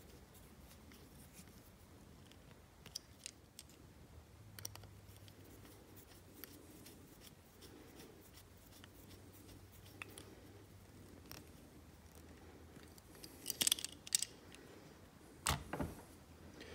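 Faint small clicks and scrapes of a 0.050-inch hex driver turning tiny 2-56 button-head screws into a diecast toy car's chassis. A few louder clicks and knocks come near the end as the car is handled and set down.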